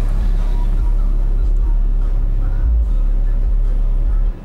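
AudioQue HDC3 15-inch subwoofer in a custom enclosure playing music bass very loud: a deep, steady low bass.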